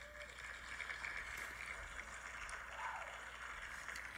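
Faint applause sound effect from a phone speaker, played by an online wheel-spinner app as its winner pop-up appears.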